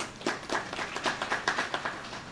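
Audience applauding: many hand claps overlapping at a quick, uneven pace, starting a moment in.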